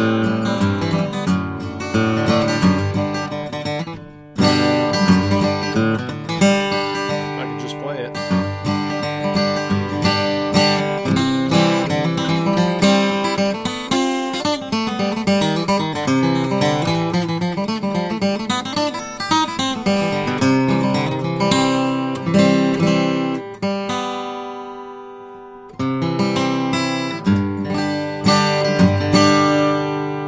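A custom 000-size acoustic guitar with an Adirondack spruce top and curly walnut back and sides, played solo as a run of notes and chords. The playing breaks off briefly about four seconds in, and near three-quarters through a chord is left to ring and fade before the playing picks up again.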